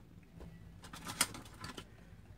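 Faint clicks and taps of small items being handled and set down, a few scattered knocks, the sharpest about a second in.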